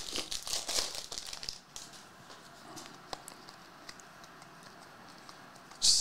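Plastic foil wrapper of a trading-card pack being torn open and crinkled for the first second or two, then only faint scattered ticks.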